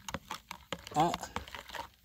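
Metal spoon stirring dissolving dry yeast and sugar in warm water in a plastic measuring jug, clicking and scraping against the jug's sides in quick, irregular ticks.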